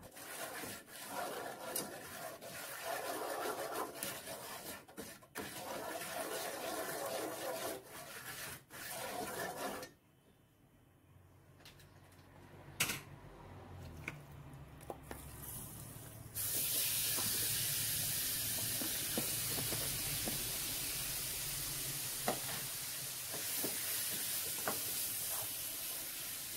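Curry powder frying in hot oil in a nonstick pan, with a spoon stirring and scraping through it. After a brief lull, a steady, louder sizzle sets in about two-thirds of the way through as marinated chicken pieces fry in the curry oil.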